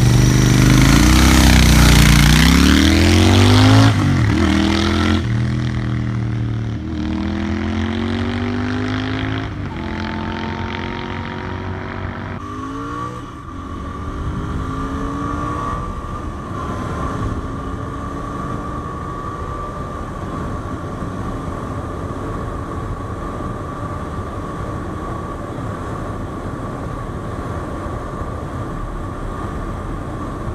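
Royal Enfield 650 parallel-twin motorcycle pulling away and accelerating, its engine pitch rising. Then, heard from on the bike, the engine climbs through the gears in a few rising sweeps and settles, about twelve seconds in, into a steady cruise with a constant whine.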